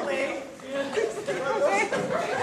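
Indistinct voices, several people talking at once.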